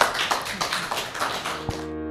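A small group applauding with a fast, irregular patter of claps. Near the end the clapping cuts off abruptly and a sustained electric-piano chord of background music begins.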